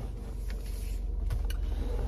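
Car engine idling, a steady low hum heard from inside the cabin, with a few faint clicks.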